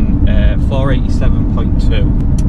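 Steady low rumble of road and engine noise inside the cabin of a 2018 Audi RS3 saloon driving at cruise, with a man talking over it.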